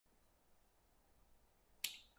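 Near silence: faint room tone, with one short, sharp click near the end.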